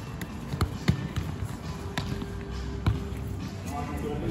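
A futsal-type ball being kicked and bouncing on a wooden sports-hall floor: several sharp thuds, the loudest about a second in and near three seconds in, with voices in the background.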